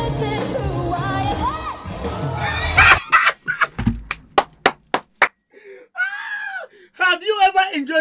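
A woman singing a pop song live with a band, which cuts off suddenly about three seconds in. A quick run of about eight sharp slaps follows, then a man lets out one long excited yell and starts talking near the end.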